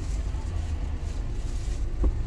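Steady low rumble inside a car's cabin, with the engine idling while the car stands still.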